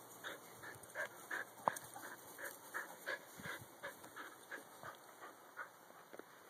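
A dog panting close by in quick, even breaths, about three a second, with a single sharp click about a second and a half in.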